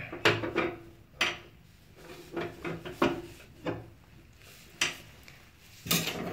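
Irregular light clicks and knocks of a metal bathtub drain stopper being handled and tapped against the drain opening.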